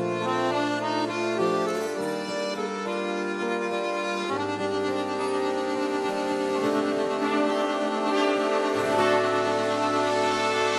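Roland digital accordion playing slow held chords over a bass line that moves to a new note about every two seconds.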